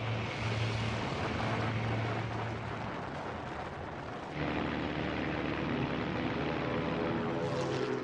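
Engine noise dubbed over wartime newsreel footage of military vehicles: a steady engine drone and rumble. A little over four seconds in it changes abruptly to a different drone with several steady pitched tones.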